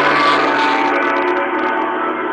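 A sustained, many-toned ringing sound effect that opens a show segment. It holds steady and fades only slightly.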